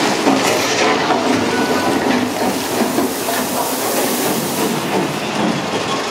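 Big Thunder Mountain Railroad mine-train roller coaster running along its track, heard from on board: a steady, loud rattle and clatter of the cars and wheels as the train runs through a rock tunnel.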